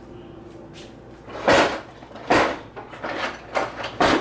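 Handling noises in a kitchen: two loud, short bumps about a second and a half and two and a half seconds in, then several lighter clicks.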